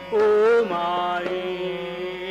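Male Hindustani classical vocalist singing in raga Kukubh Bilawal over a steady drone: the voice comes in loudly just after the start on a wavering note, then drops to a lower held note.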